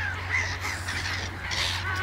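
A flock of gulls, lesser black-backed gulls among them, calling over one another in short, overlapping cries while scrambling for thrown food.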